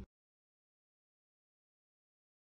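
Dead digital silence: the preceding sound cuts off abruptly right at the start, and nothing follows.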